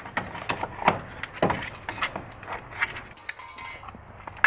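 Irregular plastic clicks and knocks of a headlight's wiring plug and housing being worked by hand, with the red locking tab pushed up to pull the tight connector off.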